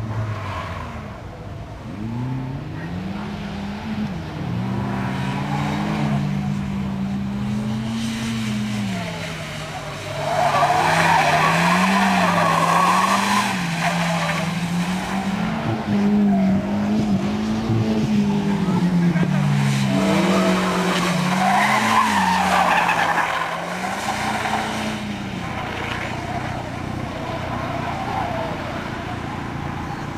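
Skoda Octavia estate's engine revving up and down again and again as it is driven hard through the turns, with loud tyre noise as the car slides, strongest about ten seconds in and again a little past twenty seconds. Near the end the engine settles to a steadier, lower note.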